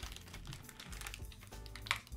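Clear plastic accessory bags crinkling, with small scattered clicks as they are handled, over quiet background music.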